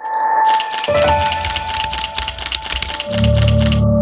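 Intro music made of a rapid, even run of mechanical clicks over sustained tones. A bass line comes in about a second in, and a heavier low layer joins near three seconds.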